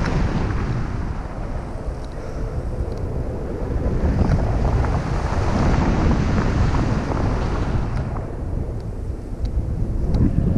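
Airflow from a paraglider's flight buffeting the camera microphone: a steady low wind noise that swells and eases, dipping a little early on and again near the end.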